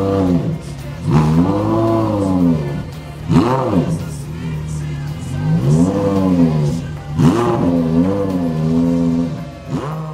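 Porsche Carrera GT's V10 engine at idle, revved about five times, each rev rising and falling in pitch over a second or two.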